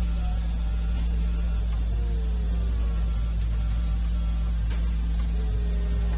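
Steady low hum of a car assembly hall, even in level, with faint indistinct sounds above it.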